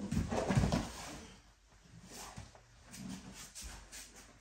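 A body rolling across padded floor mats during a martial-arts forward roll with a sword: a burst of dull thumps in the first second as the roll lands, then quieter shuffling and another soft thump about three and a half seconds in.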